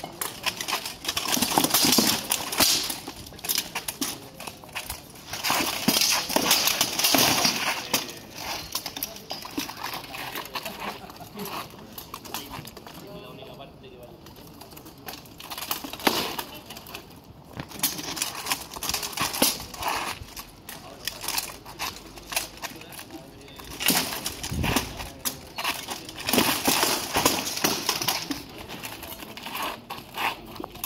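Armoured sword-and-shield fight: steel swords striking shields and plate armour in clusters of sharp clangs and knocks, with short lulls between exchanges.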